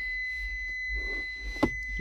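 A steady high-pitched electronic beep tone holds over a low hum. About one and a half seconds in, the storage lid of the plastic centre armrest snaps shut with a click.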